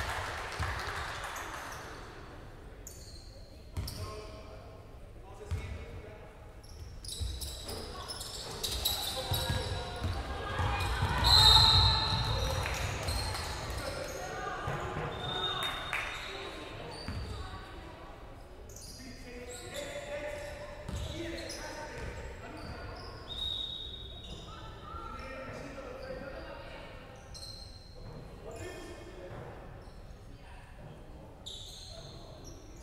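Basketball game in a reverberant sports hall: a basketball bouncing on the wooden court, short high squeaks, and voices calling out. The sound is loudest about eleven seconds in.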